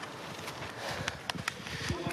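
Hooves of a harnessed trotter walking on the dirt track: a few sharp, irregular clops over a steady outdoor background hiss.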